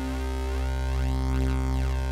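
A single held bass note from the Xfer Serum software synthesizer, its oscillator on the PWM Juno wavetable with unison voices. An LFO sweeps the unison detune and blend, so a steady low tone carries a slow, shifting phasing movement in its upper tones.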